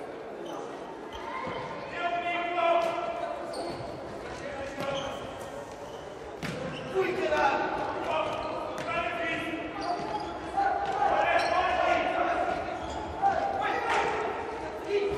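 Futsal players shouting to each other in an echoing sports hall, with occasional sharp thuds of the ball being kicked on the indoor court.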